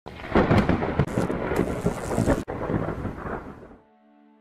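Thunder rumbling over steady rain, with a brief sudden dropout just past the middle and fading away near the end.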